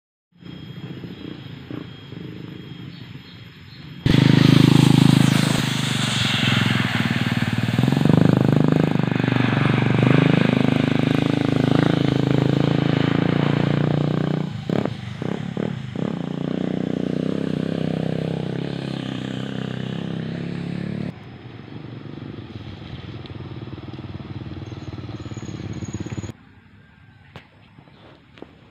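Motorcycle engine running and revving, loud from about four seconds in, then dropping sharply to a quieter run of engine and road noise about twenty-one seconds in, which cuts off near the end.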